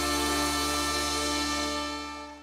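A live backing band with brass holds the final chord of a trot song, and the chord begins to fade near the end.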